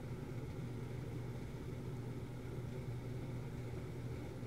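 Steady low hum with a faint hiss: room background noise with no distinct event.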